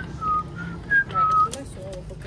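A person whistling a short tune of about five clear notes, stepping up and down, over the first second and a half, followed by a few light clicks.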